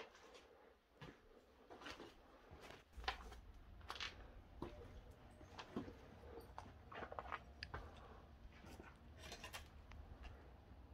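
Faint footsteps crunching over rubble and broken glass on a floor, heard as scattered short crackles. A low rumble joins about three seconds in.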